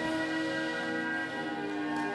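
Film credits music playing from a television, with sustained bell-like tones ringing over it.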